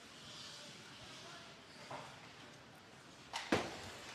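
Faint ice hockey rink sound from live play, a low even background, with one short sharp knock near the end.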